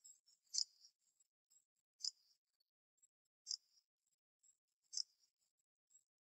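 Faint, sharp clicks, evenly spaced about a second and a half apart, four times.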